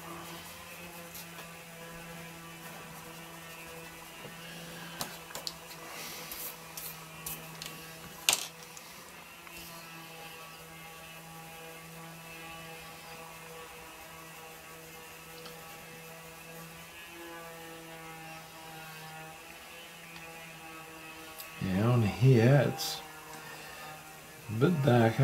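A steady machine hum holds one pitch with several overtones and drops away a few seconds before the end. Light pencil and eraser scratches and taps on paper sound over it, with a sharp click about eight seconds in.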